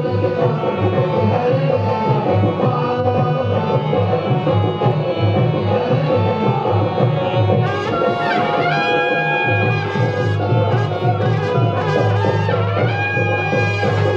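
Live Indian folk dance music with steady, busy drumming. About eight seconds in, a wind instrument slides upward and then holds long high notes over the drums.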